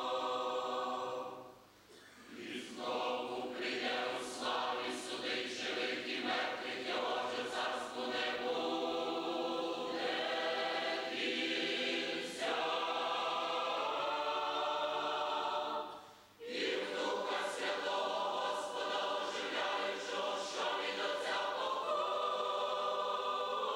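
Mixed choir of men's and women's voices singing a Christian hymn in a church, in long held phrases, with a brief break for breath about two seconds in and again about sixteen seconds in.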